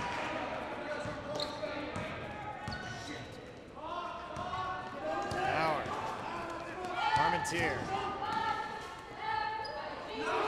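A basketball bouncing as it is dribbled on a gym floor, amid the voices of players and spectators in a large hall.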